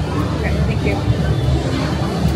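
Steady low rumbling ambience from a haunted-house attraction's sound system, with faint voices over it.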